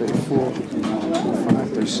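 Voices in a room talking and counting aloud while plastic-wrapped packages are handled, with a brief rustle near the end.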